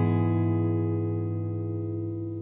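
Outro music: the last strummed guitar chord ringing on and slowly fading away.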